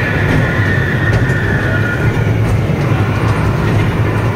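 Kiddie train ride running along its track: a steady low rumble. A thin high squeal is held over the first two seconds, slowly dropping in pitch.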